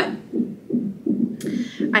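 A fetal heart rate Doppler monitor plays the unborn baby's heartbeat loudly as a fast, even, whooshing pulse, about four to five pulses a second.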